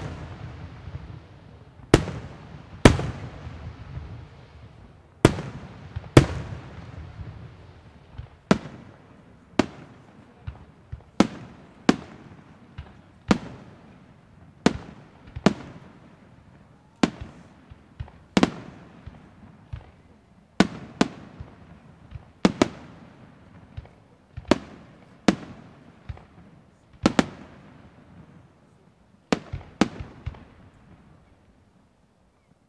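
Bruscella Fireworks aerial shells bursting in a display, a sharp bang roughly every second at irregular spacing, each followed by a rolling echo.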